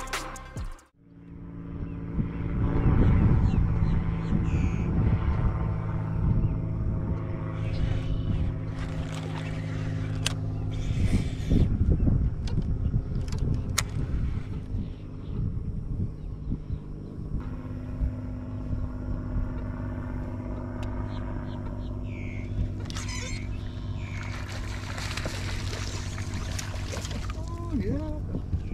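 Boat motor running with a steady low hum, loudest a few seconds in, after the sound drops out briefly about a second in.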